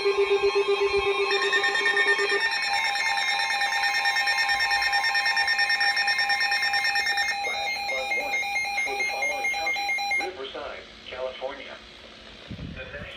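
Several NOAA weather radios sounding their alert alarms at once, each a rapidly pulsing beep at its own pitch. The alarms cut off one after another, about two, seven and ten seconds in, which marks the alert for a Flash Flood Warning.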